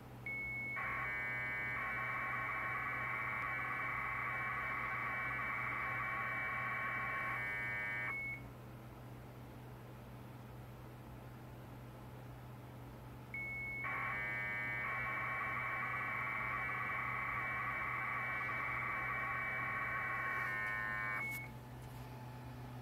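Bell 202 AFSK modem tones from a Parallax Propeller P8X32A emulator: two transmissions of about eight seconds each. Each opens and closes with a short steady high tone and in between chirps rapidly back and forth between the modem's two tones as data is sent. A low steady hum lies underneath.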